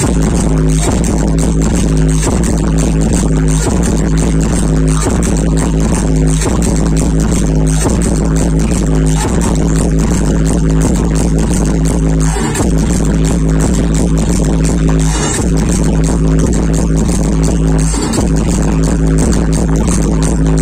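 Loud electronic dance music with a heavy, steady bass line and regular beat, blaring from a DJ sound-system truck's stacked loudspeakers.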